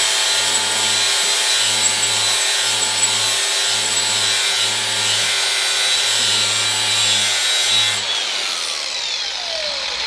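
Cordless angle grinder with a sandpaper-type wheel grinding the edge of a steel mower blade in repeated passes to sharpen it. About eight seconds in it is switched off, and its whine falls in pitch as the wheel spins down.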